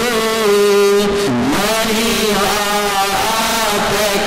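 Jain monks chanting in long, sustained notes that glide slowly up and down in pitch, with a dip about a second and a half in.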